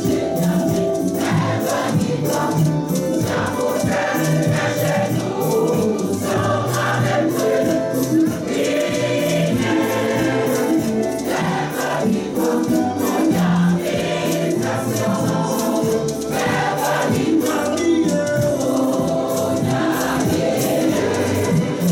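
A mixed choir singing an upbeat gospel praise song in full voice, with rhythmic hand clapping keeping the beat.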